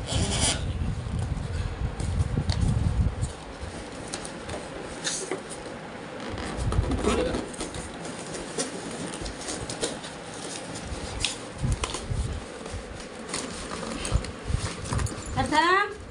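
Packaging being handled: a cardboard box, plastic wrap and polystyrene foam inserts rubbing, rustling and knocking as a boxed speaker unit is worked loose. There is a heavy low rumble of handling for about the first three seconds, then lighter scattered clicks and rustles.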